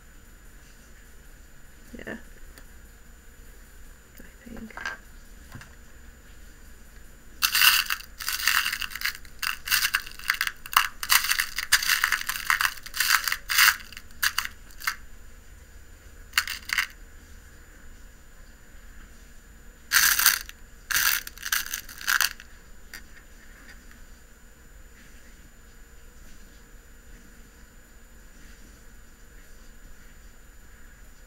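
Glass beads clattering in a plastic bead box as a hand sifts through them: a long run of quick clicks about a quarter of the way in, then a shorter flurry about two-thirds of the way through.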